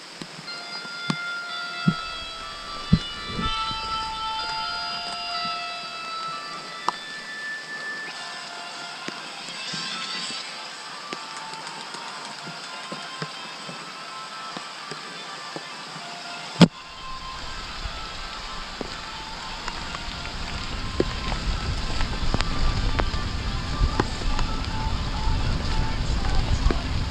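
Downhill mountain bike ride heard from a helmet camera: scattered sharp knocks and rattles from the bike over the rough wet trail, with one hard knock about two-thirds of the way through. Wind rumble on the microphone builds over the last several seconds as the speed rises, and held musical notes sound during the first several seconds.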